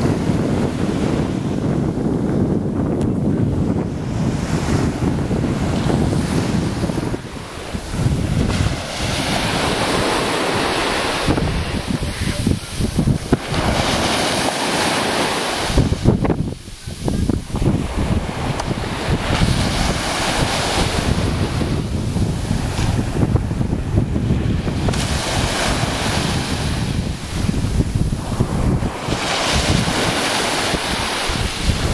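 Small waves breaking and washing up onto a sandy beach, with wind buffeting the microphone in gusts.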